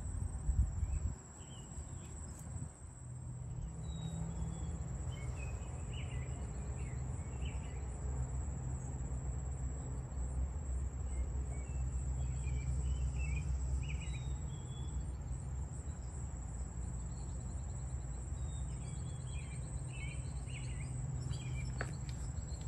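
Daytime outdoor ambience: a steady high insect drone with scattered short bird chirps over a low, steady rumble.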